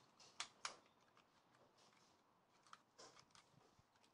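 Near silence with a few faint clicks of hard plastic toy parts being handled: two about half a second in and a few more near three seconds.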